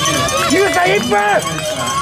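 People's voices calling out, loudest in the first half, over steady background noise.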